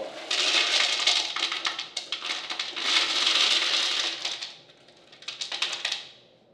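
Small glass marbles poured from a plastic tub into a glass vase of large stones, clattering and clinking against the glass and rocks in a dense rattle. The pour slackens briefly about two seconds in, stops near the end, then a short last spill follows.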